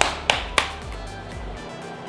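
Background music with a steady beat and a low, repeating bass that cuts out near the end, with a few sharp clinks of chopsticks and utensils against dishes in the first second.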